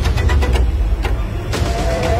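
Promo soundtrack sound design: a heavy low rumbling drone under quick clicking ticks, with a wavering high tone coming in about one and a half seconds in.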